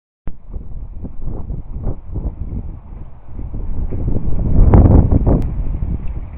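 Wind buffeting the microphone: an uneven low rumble in gusts, loudest about three-quarters of the way through.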